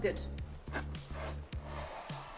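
Pencil scratching a line onto the back of a vinyl flooring sheet, with a rubbing stroke strongest near the end. Soft background music with steady low notes runs underneath.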